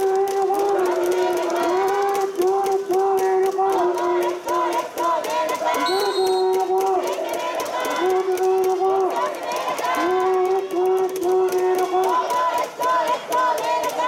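A cheering section of spectators chanting in unison, in held notes that step up and down in pitch, over a constant clatter of sharp hits.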